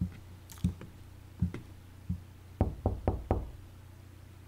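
Dull thuds about every three-quarters of a second, then four quick knocks on a door about two and a half seconds in.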